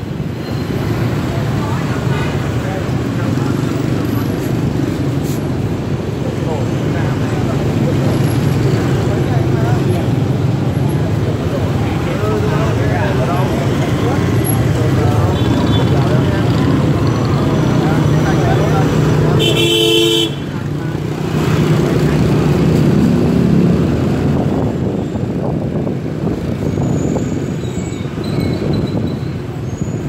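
Street traffic heard from a moving vehicle: steady engine and road noise. A vehicle horn honks once, for under a second, about two-thirds of the way through.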